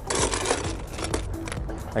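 Ice cubes tipped from a metal scoop into glass beakers, a rattling clatter for about the first half second, then a few lighter clinks.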